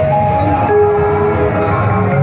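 Harmonium playing sustained reed chords over a loudspeaker system, the held notes changing a couple of times.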